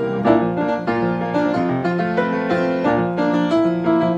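Freshly tuned grand piano being played: a continuous passage of chords and melody notes, each new note struck over sustained, ringing ones.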